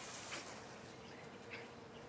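A honeybee buzzing faintly in a steady hum.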